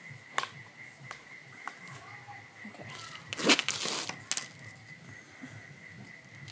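Handling noise from a homemade PVC air gun being worked by hand: scattered clicks and knocks, and a louder scraping rustle about three and a half seconds in. A faint steady high tone runs underneath.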